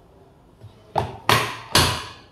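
Three sharp taps or knocks, about a second in and close together, from a hand against the plastic case of a water level controller.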